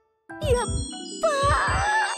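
A bright, jingling music sting with bell-like chimes starts about a quarter second in after a brief gap, over low paired thumps like a pounding heartbeat.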